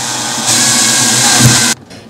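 Cordless drill driving a screw into a cast resin block to fix a small metal L-bracket. The motor runs steadily, gets louder about half a second in, then stops suddenly shortly before the end.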